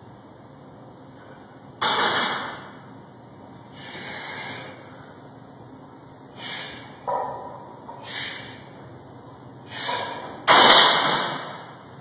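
A weightlifter's forceful breaths during a set of barbell front squats: about seven sharp, breathy puffs a second or two apart, the loudest and longest near the end.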